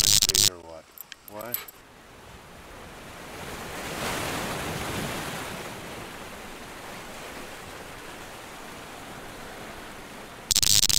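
A loud short burst, then a rushing, surf-like noise that swells for a couple of seconds, peaks about four seconds in, and settles into a steady hiss: the whoosh sound effect of an animated outro graphic.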